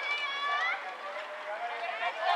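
Several distant voices shouting and calling across a ballpark, overlapping one another, with rising and falling pitch.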